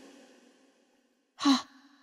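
Mostly quiet, then a single short sigh from a voice actor about one and a half seconds in.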